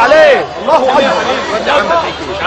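Several men's voices calling out over one another: listeners' cries of praise for a Quran reciter, with one long curving vocal phrase near the start.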